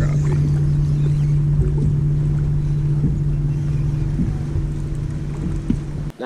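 Boat motor running at a steady low hum, with a few light clicks over it.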